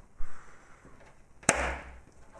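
Kitchen knife cutting a chocolate-coated cookie in half. A dull knock as the blade is set down, then, about one and a half seconds in, a sharp crack as the blade snaps through the cookie to the surface beneath, followed by a short crunch.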